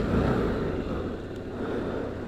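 Motorcycle engine running at a steady pace while riding, mixed with wind and road noise on the on-bike microphone.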